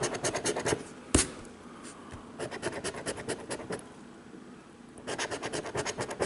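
A coin edge scratching the scratch-off coating of a paper lottery ticket in quick strokes, with one sharp tap about a second in. The scratching eases off through the middle and picks up briskly again near the end.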